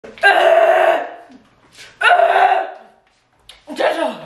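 Two loud, drawn-out vocal cries from a person, each under a second, the second coming about two seconds in. They are pained reactions to the burn of extremely hot chicken wings.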